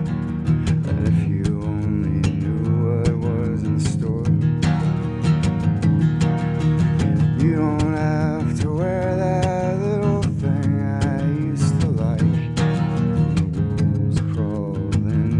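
Steel-string acoustic guitar strummed in a steady rhythm, with a man singing over it around the middle.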